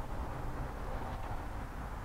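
Steady low outdoor background rumble with no distinct event.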